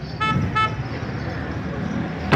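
A vehicle horn gives two short toots in quick succession in the first second, over a steady low rumble of road traffic.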